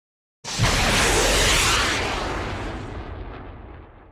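Logo-animation sound effect: a sudden loud rush of noise with a deep rumble underneath, starting about half a second in. The hiss dies away first and the whole sound fades out over about three seconds.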